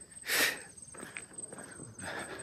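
A short breathy exhale about half a second in, then faint footsteps on a paved road, over a thin steady high insect buzz.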